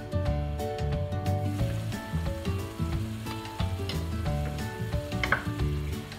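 Sauce sizzling in a wok of string beans cooking in soy sauce and vinegar, the hiss coming in after about a second and a half, over background music.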